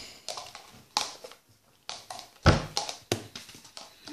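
A small plastic cup being handled and knocked, making about six sharp taps and clicks. The loudest is a heavier thump about two and a half seconds in.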